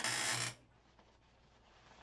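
A short rasping swish, about half a second long at the start, as the cord of a nylon drawstring bag is pulled through its channel and cord lock; after that only faint handling of the bag.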